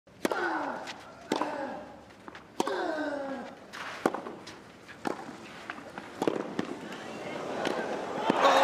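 Tennis rally on a clay court: sharp racket-on-ball strikes about once a second. The first three strikes are each followed by a player's short grunt that falls in pitch. Crowd noise builds near the end.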